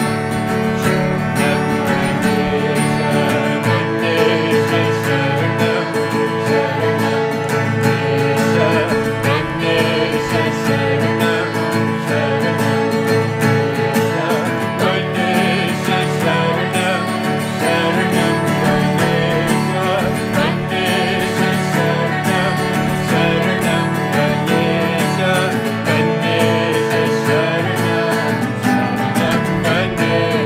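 Kirtan: a harmonium holds sustained chords under a strummed acoustic guitar, while a woman and a man sing a devotional chant.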